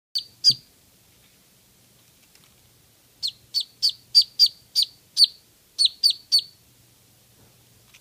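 Newborn Muscovy duckling peeping loudly: two high, downward-slurred peeps at the start, then a quick run of about ten more in the middle, roughly three a second. These are the duckling's complaining peeps at being left in the playpen.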